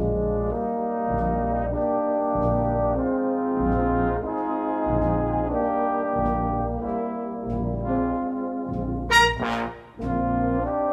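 Salvation Army brass band of cornets, tenor horns, euphoniums, trombones and tubas playing held chords over a bass line that moves about once a second, with a loud bright accent about nine seconds in.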